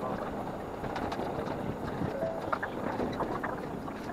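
Running noise of a diesel railcar heard from inside the carriage, played back at five times normal speed: a dense, hurried rumble with a rapid jumble of small clatters.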